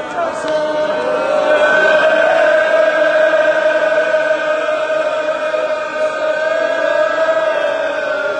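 A large crowd of men chanting together in unison, a Shia mourning chant, holding long steady notes throughout.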